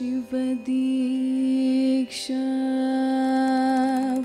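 A female Carnatic vocalist sings long, held notes over a steady drone. The line breaks for a quick breath near the start and again about two seconds in.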